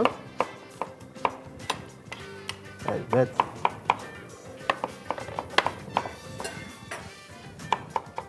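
Kitchen knife dicing a tomato on a cutting board: a run of sharp taps, about two or three a second, over faint background music.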